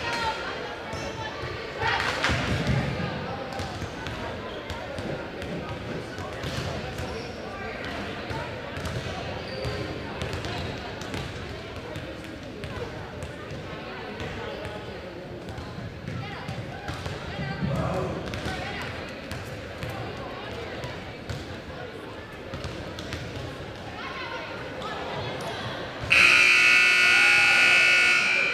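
Volleyballs being hit and bouncing on a hardwood gym floor amid players' chatter. About two seconds before the end, a loud, steady scoreboard buzzer sounds as the warm-up clock reaches zero.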